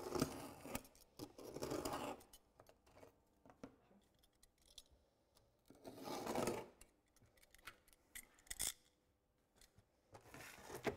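A Bardoline bitumen shingle strip being cut into ridge-tile sections: short bursts of rasping cutting, twice within the first two seconds and again about six seconds in, with scattered clicks and taps between.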